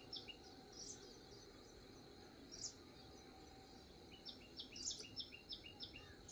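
Faint bird calls: a quick series of short high chirps, about four a second, in the last second and a half, with a single call or two in between, over near-silent outdoor background.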